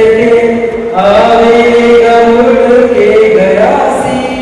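A man singing a slow melody into a handheld microphone, drawing out long held notes; the voice breaks off briefly about a second in and slides upward near the end.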